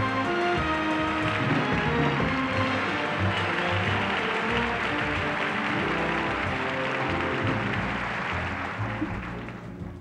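Orchestral walk-on music with audience applause swelling through the middle, both fading away just before the end.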